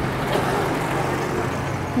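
Steady street traffic noise, an even hum of road vehicles, with faint voices in the background.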